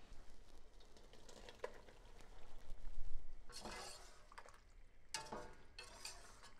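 Metal utensil stirring shell pasta through a thick cheese sauce in an All-Clad stainless steel stock pot, scraping and clinking against the pot, loudest in two bursts about three and a half and five seconds in.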